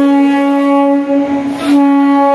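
Vande Bharat Express train horn sounding one long, steady blast as the train pulls into the platform, wavering briefly about a second in before carrying on.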